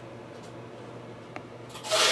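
Faint rubbing of fingers on a trading card as it is held and tilted, over low room tone, with a faint click about one and a half seconds in and a short breathy rush of noise near the end.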